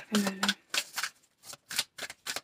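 A deck of oracle cards being shuffled by hand: a run of quick, irregular card flicks, several a second, starting about half a second in.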